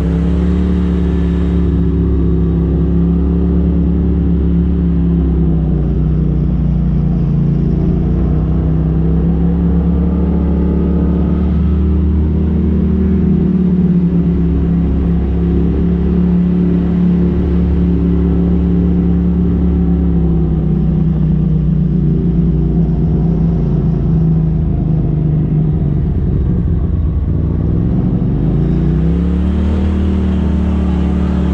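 Polaris RZR side-by-side's engine running at low revs at low road speed, its pitch falling and rising gently with the throttle. It revs up near the end.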